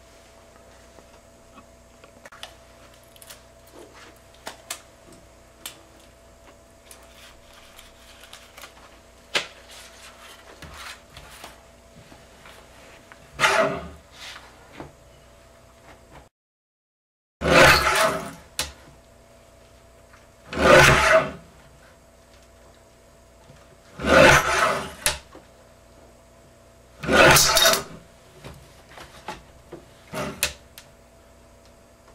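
Guillotine paper cutter shearing strips of aluminum roof flashing: five loud cuts in the second half, each about a second long and three to four seconds apart, after lighter clicks of the sheet being handled and positioned.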